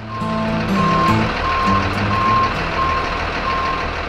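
Backup alarm of a Chevrolet stocking truck beeping at an even pace, about one and a half beeps a second, as the truck reverses, over the low rumble of its running engine.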